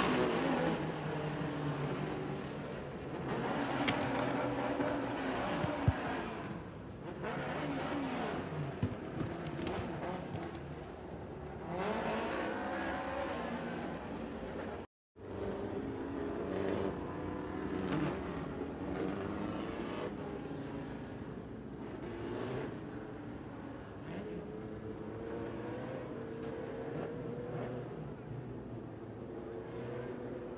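Several mini stock dirt-track race cars' engines running and revving, their pitch rising and falling as they pass. The sound cuts out briefly about halfway through.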